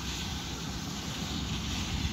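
Steady outdoor background noise: a low rumble under an even hiss, like wind on a phone microphone mixed with distant traffic.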